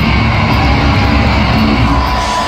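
Rock band playing live and loud through a stadium PA: guitar, bass and drums heard from within the crowd.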